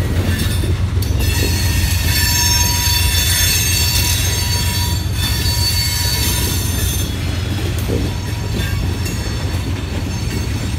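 Freight cars rolling past: a steady low rumble of wheels on rail with high, ringing wheel squeal, which thins out after about seven seconds.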